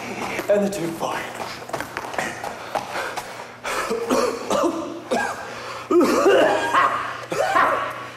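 A man's voice making short wordless vocal sounds and counts in bursts, like scatting out a dance rhythm, with cough-like breaths between them. A steady low hum runs underneath.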